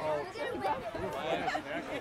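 Several voices chattering over one another at once, with no clear words; the children on the sideline are the likely talkers.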